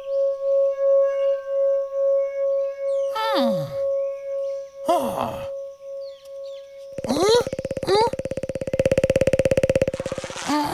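Cartoon soundtrack: a steady wavering tone, with two cartoon-character vocal sounds sliding down in pitch about three and five seconds in. From about seven seconds a rapid buzzing sets in with short rising vocal chirps over it, growing loudest near the end.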